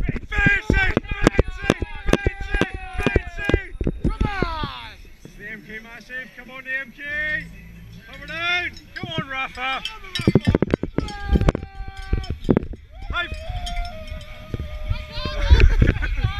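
Cyclocross spectators shouting and whooping encouragement while cowbells clang rapidly. The clanging is densest in the first four seconds and again about ten seconds in.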